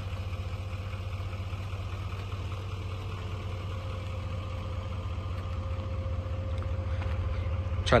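Pickup truck engine idling: a steady low rumble that grows slightly louder near the end.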